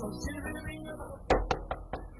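Knocking on a wooden door: four quick raps in a little over half a second, starting about halfway through, the first the loudest.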